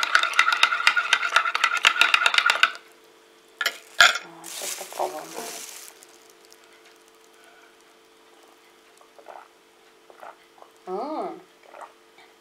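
A metal teaspoon stirring cocoa in a ceramic mug, clinking rapidly against the sides with a light ring for about three seconds, then stopping. Two sharp knocks follow around four seconds in.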